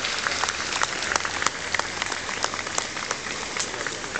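Audience applauding: many hands clapping in a dense patter of sharp claps, thinning a little toward the end.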